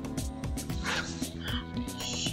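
A dog barking twice, about a second in and again half a second later, over background music with a steady beat.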